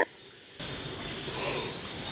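Crickets chirping in a steady night ambience, starting about half a second in after a brief hush.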